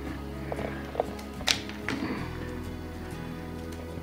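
Background music with sustained chords, over which kitchen shears snip dried chili peppers: about four sharp clicks roughly half a second apart in the first two seconds.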